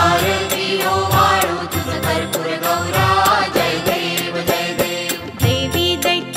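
A Marathi devotional aarti to Shiva, sung by a voice over instrumental accompaniment with a steady percussion beat.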